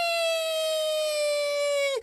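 One long, high-pitched, voice-like call held on a steady note, its pitch sinking slowly, then breaking off suddenly at the end.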